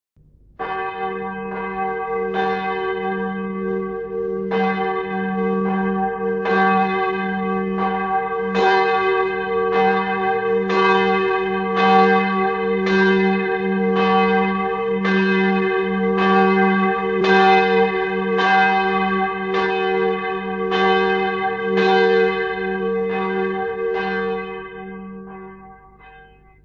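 Church bells ringing: a long series of strikes, roughly one a second, over a steady deep hum of their lingering tones, dying away near the end.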